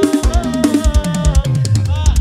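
Acoustic drum kit played hard in a busy groove, kick drum, snare and cymbals struck several times a second, over a backing track of pitched instruments.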